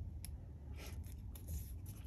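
Small strip of white card stock being folded by hand along its score lines: faint paper rustles with a few light ticks.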